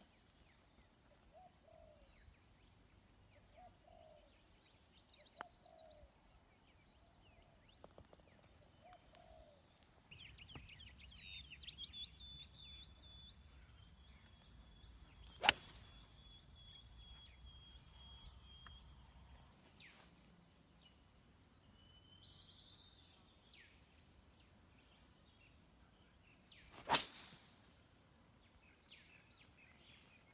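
Golf club striking the ball on two full swings, each a single sharp click: the first about halfway through and a louder one near the end. Birds chirp and call faintly between the shots.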